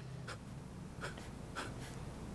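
Faint scratching of a pen on notepad paper: a few short strokes as lines are drawn.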